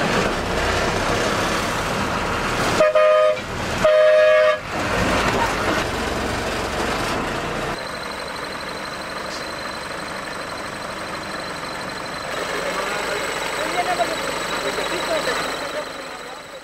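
School bus horn sounded in two short blasts about three seconds in, over the bus engine running. It is a horn check during a school bus fitness inspection.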